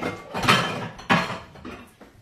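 Cast-iron pans knocking together as a skillet is pulled out of a drawer: two loud clanks about half a second apart.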